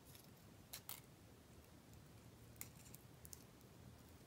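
Near silence, with a few faint, brief crinkles of crepe paper as a strip is wrapped around a flower stem by hand, two of them about a second in and a couple more later.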